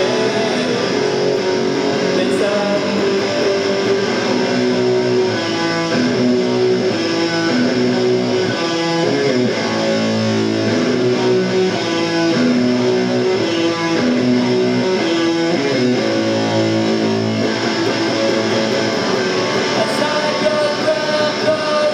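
Punk rock band playing live at full volume: strummed electric guitar chords over bass and drums, steady and unbroken.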